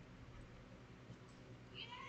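Near silence, then a cat's short meow near the end.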